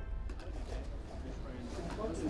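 Indistinct voices over outdoor background noise, with no words that can be made out.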